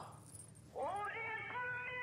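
Background score: a single held note that slides up into pitch about three-quarters of a second in and then sustains, quiet and steady.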